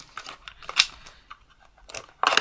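Clear acetate card box being folded and creased by hand, the stiff plastic giving a few sharp clicks and crackles, the loudest a little under a second in.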